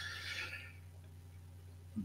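A man's short breathy exhale, fading within about half a second, then a quiet pause with a faint steady low electrical hum.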